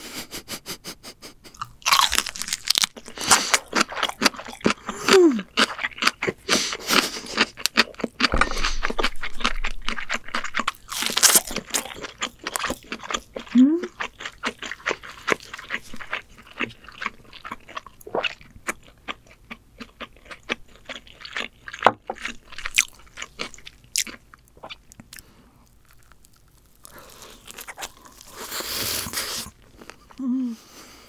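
Close-miked chewing of homemade ramen pizza, a pan-fried ramen base with melted cheese, with many sharp crunchy, crackly bites. There are a couple of brief hums from the eater, a quieter lull near the end, and then a louder burst of crunching.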